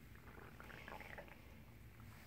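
Near quiet, with faint soft sounds from sleeping ten-day-old puppies around the middle.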